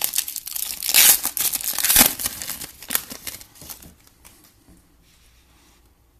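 Foil trading card pack being torn open and crinkled in the hands, with sharp crackles loudest in the first two seconds, then thinning out and dying away about four seconds in.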